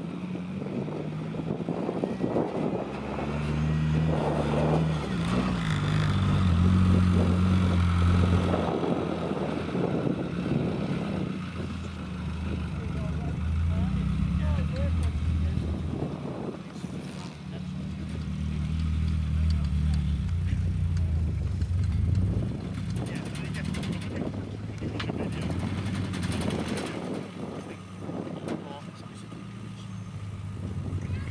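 Renault Clio hatchback engine working under load at low revs, the revs swelling and easing off in repeated surges as the car climbs a grassy slope.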